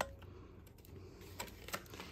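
Light handling noises from a cash-envelope ring binder and banknotes: one sharp click at the start, then a few faint clicks and taps near the end.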